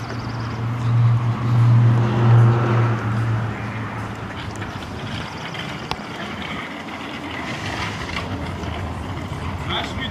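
Outdoor lot ambience: a steady low engine hum, loudest in the first few seconds and then fading, with voices in the background.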